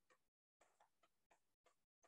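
Near silence, with faint irregular ticks of chalk writing on a blackboard.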